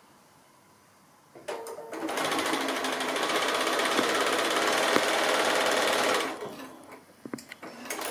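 Bernina sewing machine stitching a seam through patchwork fabric squares. It starts about two seconds in after a few handling clicks, runs at a steady fast speed for about four seconds, then slows to a stop.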